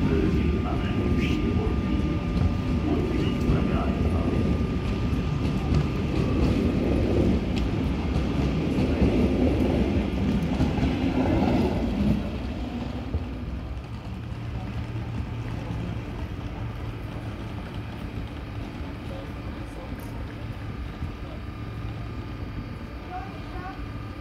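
DB Regio double-deck push-pull train, worked by a class 146 electric locomotive, pulling out of the station: the coaches' wheels rumble on the rails for about half the time, then the sound drops away sharply as the train draws off, leaving a quieter steady hum.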